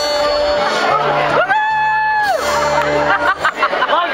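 Live band on stage holding sustained notes through the PA: a held note slides up to a higher pitch for about a second and back down, over low bass notes.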